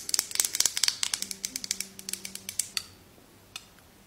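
Long acrylic fingernails tapping rapidly on a glass jar of cherries: quick clicking taps, several a second, that trail off about three seconds in, then one more tap near the end.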